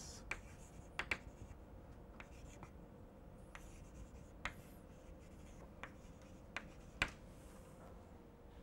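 Chalk writing on a blackboard: faint scraping strokes with sharp taps as the chalk strikes the board, the loudest tap about seven seconds in.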